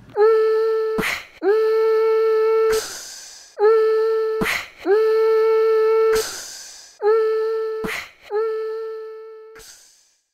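A steady pitched tone, horn-like, sounded six times in three pairs: a short note then a long note, all at the same pitch, with a brief hiss between notes. It fades out near the end.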